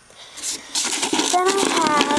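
A hand rummaging through small hard biscuit treats in an oatmeal container, rattling and rustling. A voice joins in over it in the second half.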